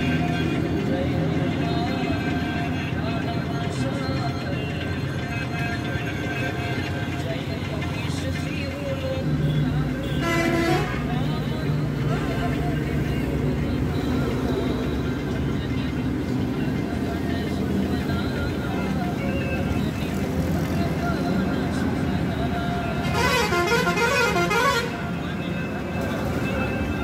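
Busy street noise: voices and passing traffic over music, with a vehicle horn sounding for about a second near the middle and again for about two seconds near the end.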